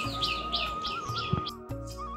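A small bird chirping over and over, about four short falling chirps a second, over background music with a flute melody. The chirping stops abruptly about one and a half seconds in, leaving the music alone.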